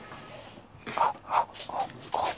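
Micro pig giving three or four short grunts in quick succession, starting about a second in.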